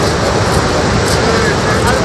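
Swollen river in flood, its water rushing in a steady, unbroken roar, with people talking faintly over it.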